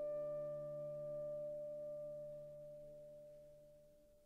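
Clarinet holding one long, pure-toned note over low sustained tones beneath it, fading steadily away toward silence by the end.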